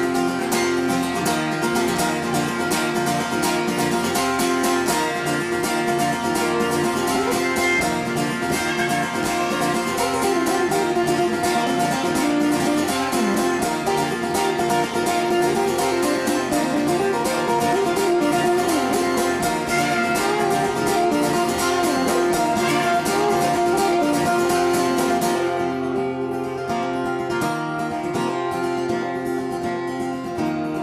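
Martin acoustic guitar strummed steadily through an instrumental passage with no singing. Near the end the strumming drops away to softer, quieter playing.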